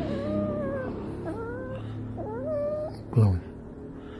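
A domestic cat meowing three times, in long calls that waver and glide in pitch. About three seconds in comes a brief, louder sound with a falling pitch.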